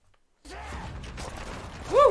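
Brief near silence, then about half a second in a TV drama's soundtrack starts playing: a steady low rumble with hiss. Near the end a short, loud voice cry of "woo" rises and falls in pitch.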